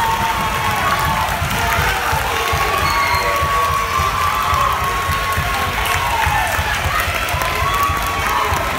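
Theatre audience applauding and cheering: dense clapping throughout, with long whoops and shouts rising above it.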